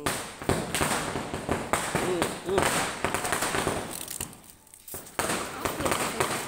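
Firecrackers going off in a rapid, crackling series of bangs, which thins out about four seconds in and starts again about a second later.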